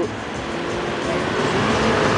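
Mitsubishi L200 pickup driving along a sand track, heard on board: a steady engine drone under a loud rushing noise.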